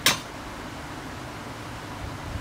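A single sharp metallic clink as a small hand tool meets the steel ruler and board, followed by a steady low hiss of room noise.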